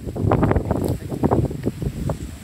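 Wind buffeting the microphone in irregular gusty rumbles.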